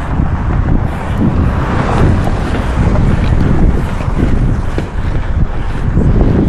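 Wind buffeting the pole-mounted camera's microphone, over the rumble of inline skate wheels rolling on a concrete sidewalk.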